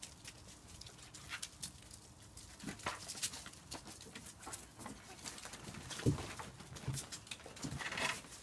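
Border Collie puppies scuffling and play-fighting on a dog mat: scattered scratches and rustles, with a few soft thumps about three, six and seven seconds in.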